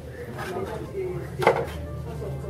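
A single sharp knock of a paint pot or bowl against a worktable about one and a half seconds in, with faint voices in the background.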